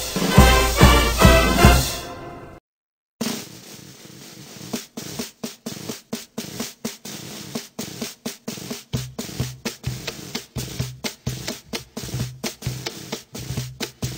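Background music: one piece ends about two seconds in, followed by a brief gap of silence. A new piece then starts on a sparse, steady drum beat, and bass notes join about halfway through.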